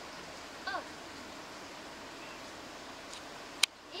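Steady rushing of a river, with a short spoken "oh" about a second in and a sharp click near the end, after which the sound briefly drops away.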